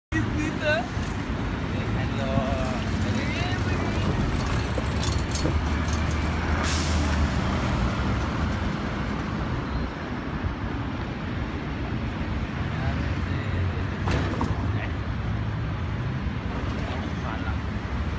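Road traffic on a busy city avenue: motor vehicles passing with a steady low rumble, one louder passing vehicle around six seconds in, and snatches of passers-by's voices.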